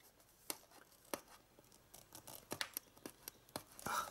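Faint, scattered clicks and light scrapes of fingers handling a metal steelbook Blu-ray case as it is turned over in the hands.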